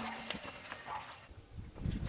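Faint, irregular clicks and crackles from a car tyre rolling slowly over crushed plastic tubes on pavement, then a low rumble of the tyre rolling on asphalt building near the end.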